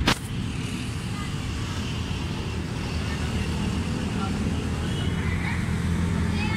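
Steady low rumble of background road traffic, with a single sharp click right at the start.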